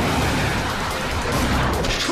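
Dramatic action-cartoon background music with dense noisy blast sound effects of energy weapons firing, a few sharp hits near the end.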